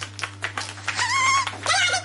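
A run of quick sharp taps, then about a second in a shrill, very high-pitched voice starts shouting, breaking into syllables toward the end.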